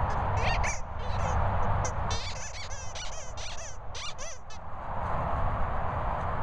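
Squeaky rubber dog toy squeaking over and over as a chocolate Labrador chomps on it while carrying it: a quick cluster of squeaks about half a second in, then a denser run of wavering squeaks from about two to four and a half seconds in, over a steady rushing background.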